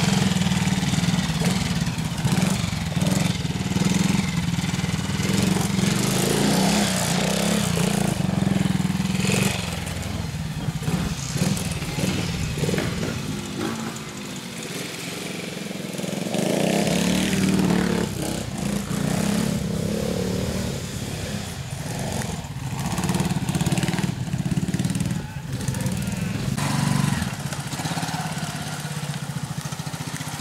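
Twin-shock trials motorcycle engines running at low speed, the revs rising and falling again and again as the throttle is worked over obstacles, with a quieter stretch about halfway through.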